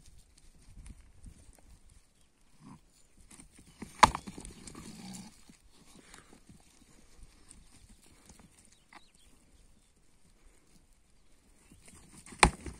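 Rams fighting: one sharp, loud crack of horns and skulls colliding in a head-butt about four seconds in. Scattered hoof steps on dry ground run around it.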